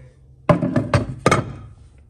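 Ceramic canister lid being set back onto its jar: several hard clinking knocks between about half a second and a second and a half in.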